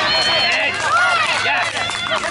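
Many spectators' voices shouting and cheering at once, overlapping and excited, for a base hit.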